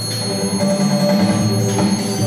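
Electronic music played live on a keyboard and electronic gear through small speakers: several held tones at steady pitch over a low drone.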